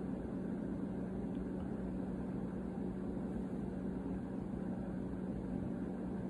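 A steady low mechanical hum with one constant low tone, unchanging throughout: background noise from something running nearby.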